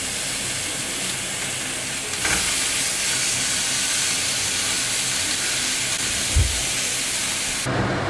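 Beef and pork sizzling in a frying pan over a gas burner, a steady hiss that grows a little louder about two seconds in. A single low thump comes about six seconds in.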